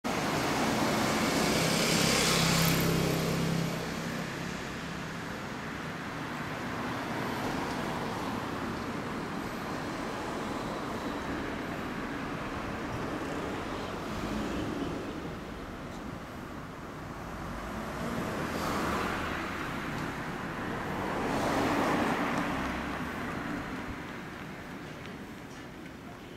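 Suzuki GSX250SS Katana's 250 cc inline-four running through an aftermarket Moriwaki exhaust, with a steady low drone. It is loudest for the first few seconds and swells briefly a few times near the end.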